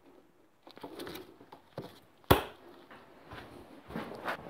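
Faint handling of hand tools on a moped, with one sharp click a little over two seconds in.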